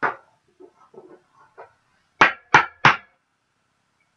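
A trading card being handled and put into a hard clear plastic holder: a sharp knock at the start, faint rustling, then three loud sharp knocks about a third of a second apart about two seconds in.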